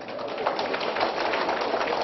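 Audience applauding: a steady patter of many hands clapping that builds up about half a second in.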